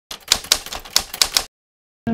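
Typewriter key strikes, about six sharp clacks in quick, uneven succession, then they stop. This is a sound effect for the words "Day 5" being typed out letter by letter.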